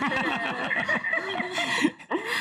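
Several people laughing at once in short, broken chuckles.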